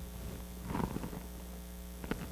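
Steady low electrical mains hum in the sound system, heard during a pause in speech.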